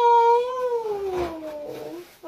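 A woman's long, high-pitched wailing vocal, a drawn-out emotional squeal, held and then slowly falling in pitch until it ends at about two seconds.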